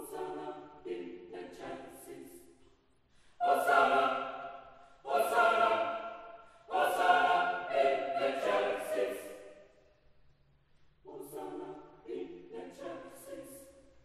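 Mixed choir singing a sacred Mass setting in sustained, held phrases: soft at first, then three loud entries about three and a half seconds in, a short pause near ten seconds, and quieter phrases again to close.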